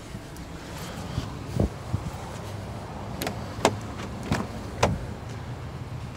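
A series of sharp knocks and clicks inside a car cabin, about six of them spaced half a second to a second apart, over a steady low hum. These are handling knocks from someone moving about in the car's cabin.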